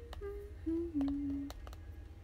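A young woman humming a short falling tune with her lips closed: four notes stepping downward, the last and lowest held for about half a second. A few faint clicks sound over it.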